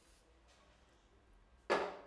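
Near silence: room tone, then a man says "OK" near the end.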